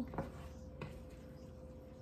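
Faint stirring of a thick stew with a wooden spatula in a stainless steel skillet, with a couple of soft clicks in the first second, over a steady faint hum.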